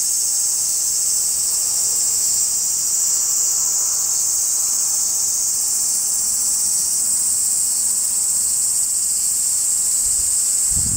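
Cicadas calling in a steady, high-pitched chorus from the summer trees.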